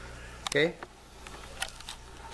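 Handling noise: a few light clicks and rubs as the camera is moved, over a steady low hum.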